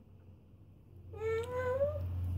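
Baby vocalizing: one drawn-out, high-pitched call starting about a second in and rising slightly in pitch.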